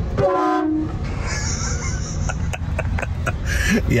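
Train-style air horns on a pickup truck sounding, heard from inside the cab, with a laugh just at the start.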